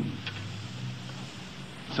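A pause in a spoken lecture: the steady hiss and low hum of an old tape recording's background.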